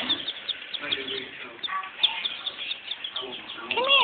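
Black sex-link chicks peeping: many short, high peeps in quick succession.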